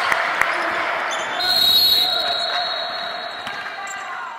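Basketballs bouncing on a gym court with background voices, and a steady high tone for about two seconds from about a second and a half in. The sound fades toward the end.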